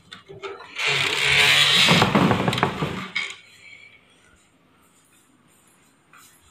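A metal-framed mesh security door scraping and rattling for about two seconds as it is moved by hand.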